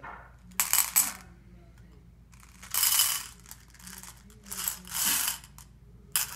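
Small hard pieces rattling and clinking in a clear plastic container as a toddler scoops and drops them, in four short bursts of clatter.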